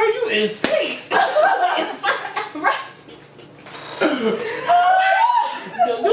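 Women's voices laughing and exclaiming without clear words, with one sharp slap about half a second in.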